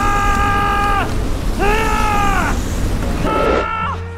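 A man yelling a battle cry in long shouts over the steady low rush of a flamethrower firing. The first shout ends about a second in, a second follows at about the middle, and a shorter third comes near the end, each falling in pitch as it stops.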